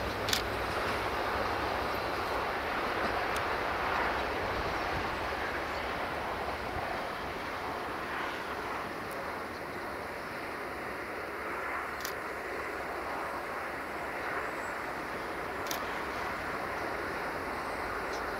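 Passenger train running along the line: a steady rumbling rush of wheels on rails. A low hum fades away over the first several seconds, and a few sharp isolated clicks sound through it.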